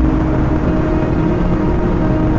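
Slow ambient background music with long held notes over a steady low rumble of vehicle and road noise.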